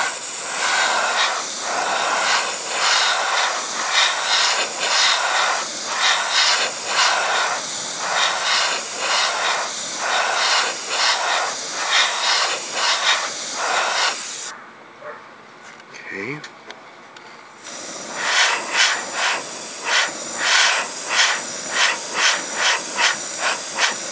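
Airbrush with a paint cup spraying paint: a steady hiss of air that swells and eases about twice a second. It cuts off suddenly a little past halfway, pauses for about three seconds, then starts again.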